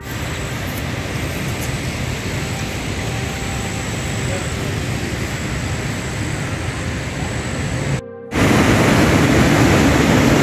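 Steady rain: a continuous, even hiss. It cuts out briefly about eight seconds in and returns louder.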